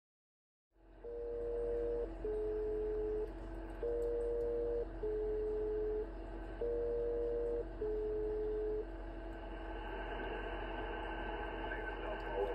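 SELCAL selective-call tones received over HF single-sideband on a Yaesu FT-710 transceiver: three repeats of a pair of one-second tone pulses, the second pulse of each pair lower, the pairs starting about 2.8 s apart. Steady band hiss and hum run underneath, and after about nine seconds only the band noise is left.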